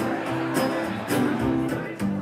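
Live country band playing: an acoustic guitar strummed in a steady rhythm over repeating upright-bass notes, with an electric guitar.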